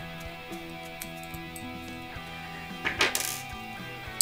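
Metal right-angle jack-plug connectors of a solder-free patch cable kit clicking in the hands, with a brief metallic clatter about three seconds in as they are set down on the desk. Soft guitar background music plays underneath.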